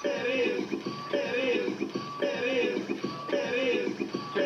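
Electronic music played from DJ decks: a short phrase with a pitched lead line repeats about once a second.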